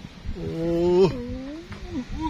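A man's long drawn-out exclamation "oh" (โอ้), held for well over a second, dropping to a lower pitch about a second in.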